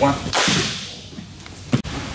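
Two grapplers moving against each other on mats during a guard pass: a brief swishing rush about a third of a second in, then a sharp slap near the end.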